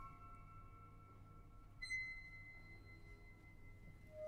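A very quiet passage of concert music for flute, harp, percussion and string orchestra. Faint high held tones die away, then a single high struck note enters about two seconds in and rings on softly.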